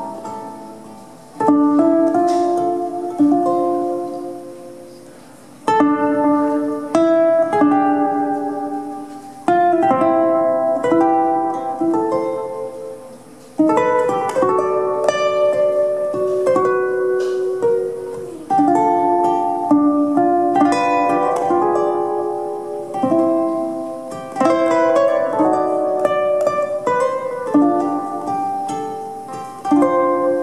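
Solo ukulele playing a slow, freely timed melody with chords. Through the first half, each phrase opens with a struck chord that rings and fades over a few seconds. After that the picking is denser and more continuous.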